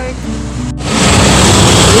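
Loud, steady rushing wind and road noise from a moving vehicle, starting suddenly about three-quarters of a second in after an abrupt cut. Before the cut there is a short held pitched sound, music or a voice.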